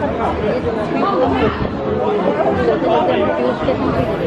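Chatter of people talking close by, overlapping voices with no clear words, amid a busy pedestrian crowd.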